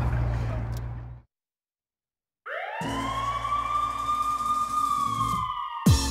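A siren winds up from a low pitch to a high, steady wail after a moment of dead silence, holds for about three seconds while sagging slightly in pitch, then cuts off abruptly.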